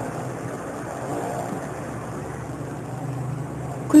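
Steady low background hum under faint, even noise.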